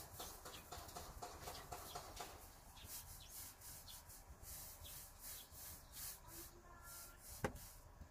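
Small paint roller on an extension handle rolling primer over textured exterior siding: a faint rubbing swish repeated with each quick back-and-forth stroke. A single sharp click near the end.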